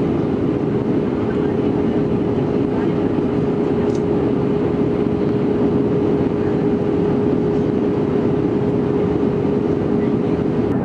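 Steady cabin noise inside an Airbus A320 on its descent to land: engine and airflow roar heard through the cabin, with a steady hum running through it.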